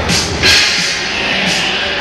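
Loud background music.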